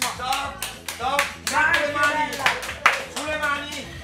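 Group of people clapping hands in a steady rhythm, about three claps a second, over voices and music.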